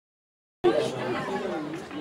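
Silence for about half a second, then people talking in the background.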